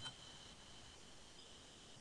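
Near silence, with only a faint steady high tone running through it.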